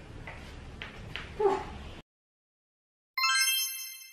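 A bell-like chime sound effect struck once, starting suddenly near the end with a bright ring that fades away, after a moment of dead silence from an edit cut. Before the cut there is only faint room tone and a woman's brief "ooh".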